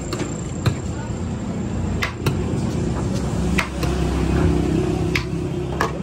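Steel ladle and platters knocking and clinking now and then, sharp single strikes at uneven intervals, over a steady low background rumble.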